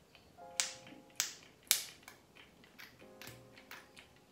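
Pump dispenser of a moisturizer bottle pressed three times into a palm, each press a sharp click, followed by a few fainter clicks. Soft background music plays underneath.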